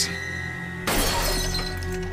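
Sustained trailer music, broken about a second in by a sudden shattering crash with a deep boom and a long fading tail.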